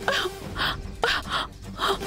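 A frightened woman gasping for breath in a rapid run of short, ragged gasps, about three a second, panicked breathing as if her throat is burning from poison. A sustained background music note runs underneath.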